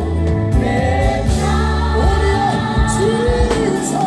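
Live gospel music: a man singing a held, sliding melody into a microphone over a keyboard-led band with electric guitar.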